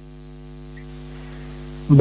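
Steady electrical mains hum on the recording, a stack of even buzzing tones over faint hiss, growing slightly louder through the pause.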